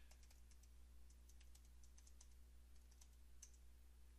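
Faint computer keyboard typing: a scatter of light key clicks, irregularly spaced, over a low steady hum.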